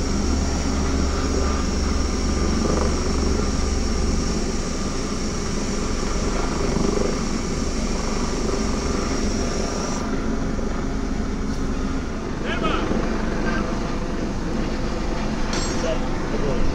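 Steady mechanical drone of a ship's machinery on deck, with a thin high whine that cuts off suddenly about ten seconds in.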